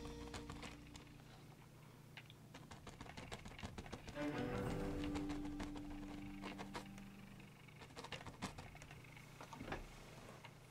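Quiet background music: one track fades out in the first second, and a short music sting swells in about four seconds in and dies away a few seconds later. Faint, irregular taps and dabs of a paintbrush on canvas run underneath.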